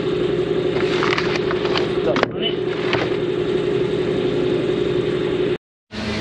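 Knocks and scrapes as a car battery is slid out of its tray and lifted from the engine bay, over a steady machine hum. The sound cuts off suddenly shortly before the end.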